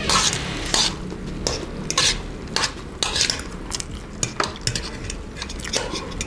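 Metal spoon and fork stirring and tossing a large pan of wet instant noodles, with irregular clinks and scrapes of the cutlery against the metal pan.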